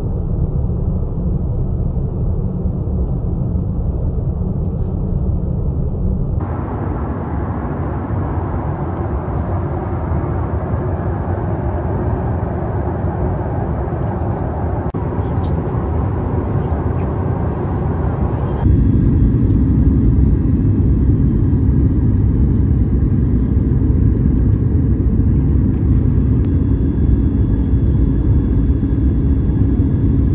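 Steady noise of a jet airliner in flight heard from inside the cabin, engines and airflow together. It changes character abruptly twice and becomes louder and deeper about nineteen seconds in, with a steady low hum.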